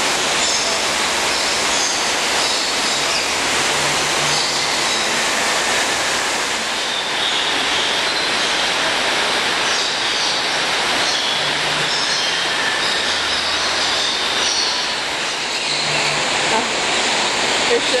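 Steady rush of falling water, with short high bird calls now and then over it.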